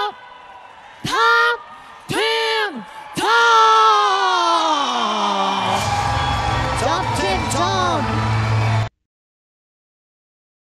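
A ring announcer calls out the winner's name in three loud, drawn-out shouts, the last held for over two seconds and falling in pitch. About six seconds in, a low steady music beat comes in under more calling, and the sound cuts off suddenly near the end.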